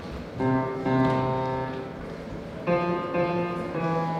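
Grand piano playing a slow piece: a chord struck about half a second in and another near three seconds, each left to ring and fade.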